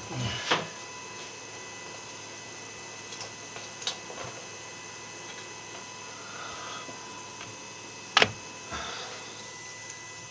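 Steady hum of a 3D printer's fans, with a few scattered clicks and knocks as the finished print is handled and taken off the build plate. The sharpest knocks come about eight seconds in.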